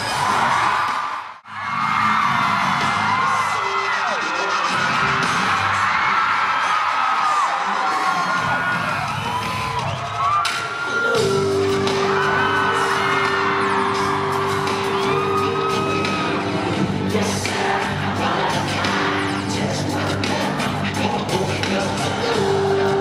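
Arena concert crowd screaming and cheering, with a sudden brief drop out just after the start. About halfway through, a song's intro starts up with a long held note over a pulsing low bass, and the crowd keeps screaming over it.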